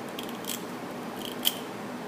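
Metal cookie scoop (disher) being squeezed to release dough, its sweep blade snapping across the bowl with a few sharp metallic clicks, the loudest about one and a half seconds in.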